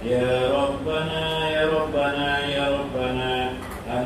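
Male voices chanting an Arabic devotional recitation in long held notes, in phrases of about a second each.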